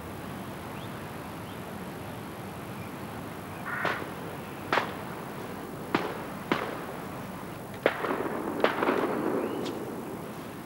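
Sparse background music: a few single plucked notes, guitar-like, spaced about a second apart from partway through, over a steady hiss.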